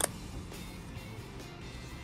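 A single sharp click at the very start as a magnetic ND filter snaps onto the Ulanzi UURig magnetic adapter ring on the lens, over quiet background music.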